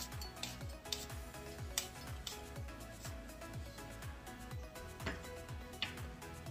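Background music with a steady low beat. Over it come a few sharp knocks of a santoku knife cutting through apple pieces onto a wooden cutting board.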